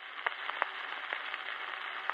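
Surface noise of a 78 rpm shellac record playing on with no music: a steady, thin hiss with scattered sharp clicks and crackles from the needle in the groove.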